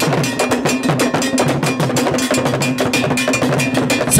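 Traditional drumming with a ringing bell part, playing a quick, steady beat of several strokes a second over a stepping low drum line.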